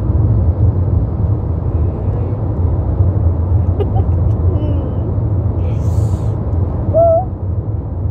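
Steady low rumble of a car, heard from inside the cabin, with a few faint short sounds of a child's voice about halfway through and near the end.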